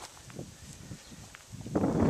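A few soft footsteps crunching on dry garden soil. Near the end a gust of wind buffets the microphone with a loud, rushing noise.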